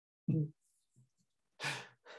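A man laughing softly: a short voiced chuckle, then, about a second later, a breathy laughing exhale.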